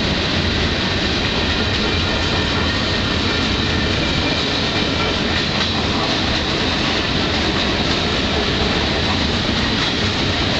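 Freight train of mixed cars rolling past, with a steady noise of wheels on rail.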